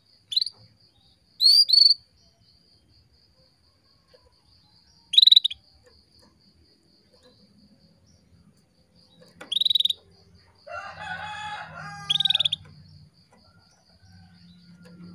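Female canary giving short, sharp call chirps, about six spread irregularly, the calls a hen uses to call a male. A rooster crows in the background near the end, and a faint pulsing insect trill runs underneath.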